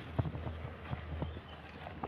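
Faint, irregular light taps and clicks over a low steady hum: hands handling potted seedlings in a wooden slat crate.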